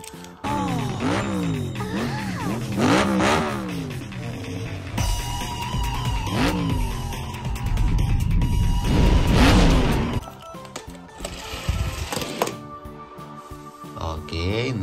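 Soundtrack of an animated car cartoon: music mixed with cars' engines revving and passing by, loudest about nine seconds in.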